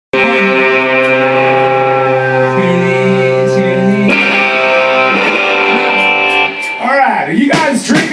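Distorted electric guitar holding a sustained chord, switching to another held chord about four seconds in. The chord stops about six and a half seconds in, and a man's voice starts talking into the microphone near the end, with a few sharp hits.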